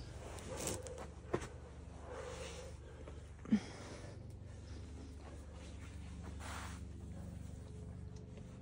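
A boulderer climbing: several hard breaths, a few short knocks or scuffs of hands and climbing shoes on sandstone, and one sharp sound about three and a half seconds in, the loudest.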